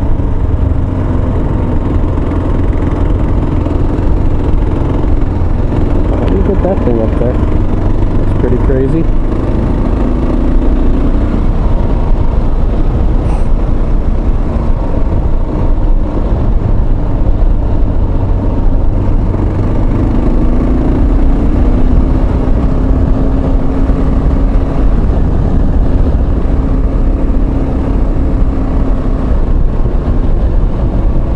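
Loud, steady wind and road rush picked up by a microphone inside a motorcycle helmet while riding, with the motorcycle's engine running steadily underneath.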